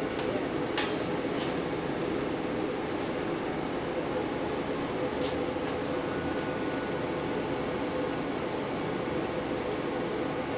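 Steady ventilation hum in a commercial kitchen, an even rush of air with a faint held tone, broken by a few faint clicks.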